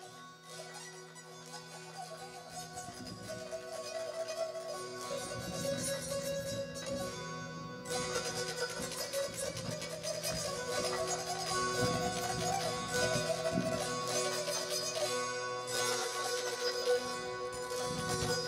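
Hungarian citera (fretted folk zither) strummed with a plectrum: a melody line over steadily ringing drone strings. The strumming grows louder and fuller from about three seconds in.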